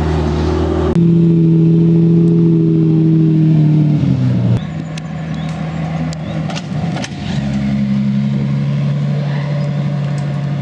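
Supercar engines running at low, steady revs as the cars roll slowly past, with the sound changing abruptly twice where different passes are joined. In the second half a Ferrari LaFerrari's V12 is heard driving by.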